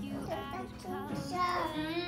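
A toddler's soft sing-song vocalizing in short rising and falling phrases, over faint background music.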